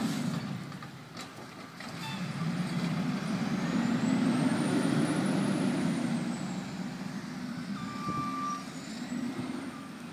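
Truck engine running, growing louder in the middle, with a thin high whine that rises and falls and a short beep near the end.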